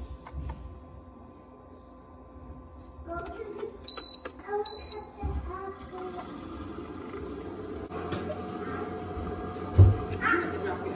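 Keurig K-Café single-serve coffee maker: two short high beeps about four seconds in as its buttons are pressed, then from about six seconds in the machine starts brewing with a steady, building hum and hiss as coffee begins to pour into the jar. One loud thump just before the end.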